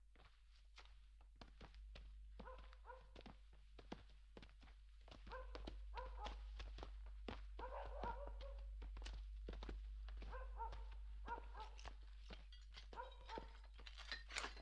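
Faint animal calls in short repeated bursts, mixed with scattered light knocks and footsteps. Everything grows a little louder about five seconds in.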